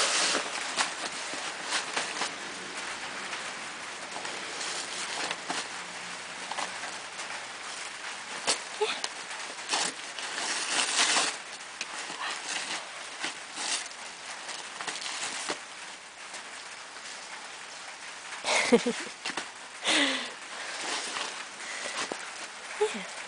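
Brown paper wrapping crackling and tearing as a Newfoundland dog rips it open with its teeth, in irregular rustles with a louder stretch of ripping about ten seconds in.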